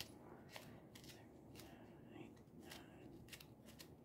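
Faint ticks of a fingertip flicking across the pleats of a paper oil filter element, one pleat at a time, as they are counted.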